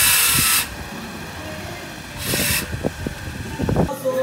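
A handheld power tool running loud, cutting off about half a second in, then a second short burst a couple of seconds later, with low thumps in between.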